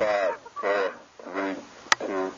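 A launch countdown called out aloud, one number about every three-quarters of a second, with a sharp click near the end.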